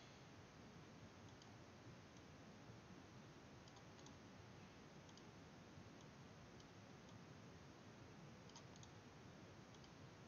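Near silence: room hiss with faint computer mouse clicks scattered through it, about ten in all.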